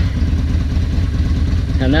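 Yamaha XV250 Virago's air-cooled V-twin idling steadily, run up to temperature to heat-set freshly wrapped exhaust header pipes.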